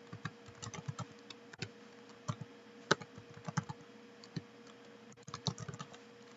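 Computer keyboard being typed on: irregular single keystrokes and short runs of clicks, over a faint steady hum.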